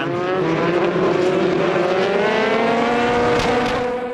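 Prototype race cars accelerating hard through a corner, one engine's note rising steadily in pitch over the noise of the rest of the field, as the pack gets back up to speed at a restart after a safety car.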